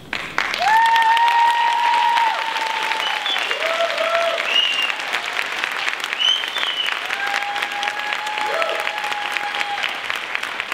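Audience applause breaking out sharply, with several long, high cheering calls held over the clapping.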